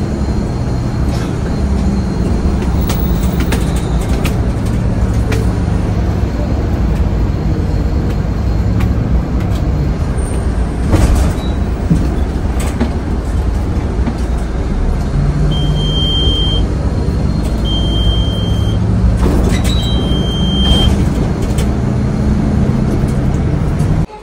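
Bus engine heard from inside the cabin, a low drone that rises and falls as the bus drives, with occasional knocks and rattles. Three short high beeps, each about a second long, come a little past the middle.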